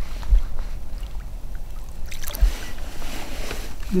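Water splashing at the side of an inflatable boat as a hooked smallmouth bass is fought alongside to be landed by hand, over a steady low rumble, with a couple of dull thumps. The splashing is strongest in the second half.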